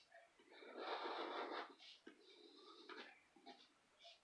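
Scratch-off lottery ticket being scraped with a handheld scratcher: faint rasping scrapes in strokes, the longest for about a second near the start, then a weaker one and a few short scrapes.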